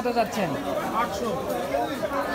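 Market chatter: several people talking at once in Bengali, one man's voice nearest, with no other sound standing out.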